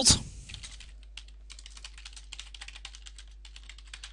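Typing on a computer keyboard: a fast, uneven run of key clicks as a line of code is typed.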